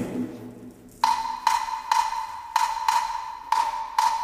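Wooden hand percussion playing sharp, pitched clicks, about two a second in an uneven repeating rhythm, starting about a second in as the preceding music fades away.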